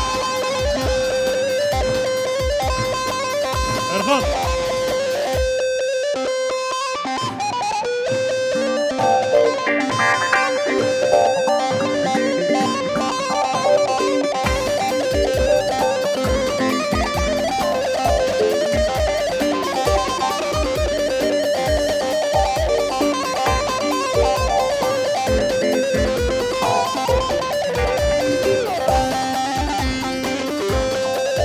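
Live Turkish folk dance music: a band with bağlama (long-necked saz) and keyboard playing the melody over a davul bass drum beating a steady dance rhythm. The drum and low end drop out for about two seconds around six seconds in, then the beat comes back.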